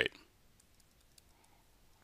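Faint, scattered clicks of a stylus tapping a pen tablet during handwriting.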